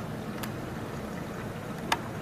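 Steady low hum and hiss of a reef aquarium's running pumps and water circulation, heard close to the tank. A faint click about half a second in and a sharper click near the end.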